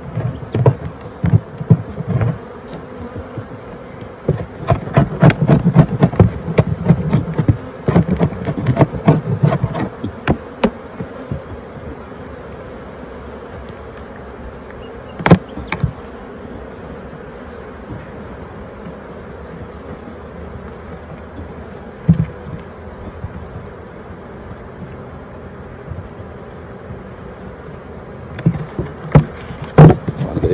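Honeybees buzzing steadily around an open hive. Over this, a metal hive tool scrapes and clicks on the wooden box for about the first ten seconds, a single sharp knock comes about fifteen seconds in, and a few more knocks come near the end as the lid goes back on.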